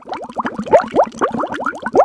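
Bubbling, blooping intro sound effect: a rapid run of short rising notes, about seven or eight a second, like water bubbling.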